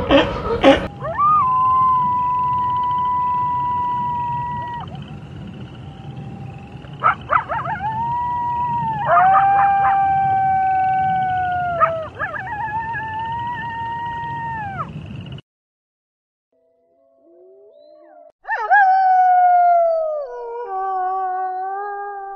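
Arctic wolves howling: several long, steady howls overlap in a chorus, which cuts off abruptly about fifteen seconds in. After a short pause, a single loud howl falls in pitch and breaks into short stepped notes near the end.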